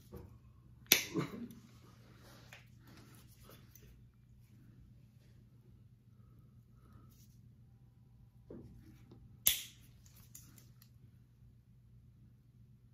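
Stainless toenail nippers snapping shut through thick, fungus-infected toenails: two sharp cracks about eight and a half seconds apart, the first about a second in, with a few faint clicks of the instrument between them.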